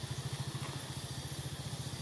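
An engine idling steadily, a fast, even low throb.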